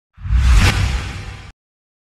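A whoosh sound effect with a deep low boom underneath. It swells quickly, peaks about half a second in, then fades and cuts off abruptly about a second and a half in.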